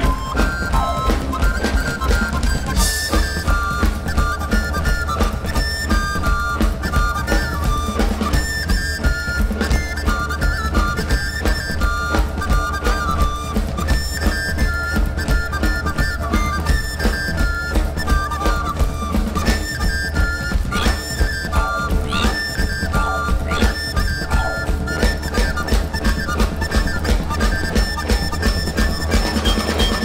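Live pagan folk band playing: a wind instrument carries a melody of held, stepping notes over a steady, fast drum beat.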